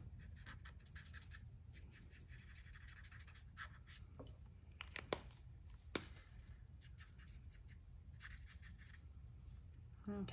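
Faint scratching of an Ohuhu alcohol marker's tip on cardstock, followed a little past the middle by a couple of sharp clicks as the marker is handled and put down.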